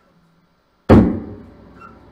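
A loud thump through an instrument amplifier as the cable jack goes into an electric mandolin, about a second in, dying away over half a second into a faint buzz: the unwanted plug-in pop of a live amp.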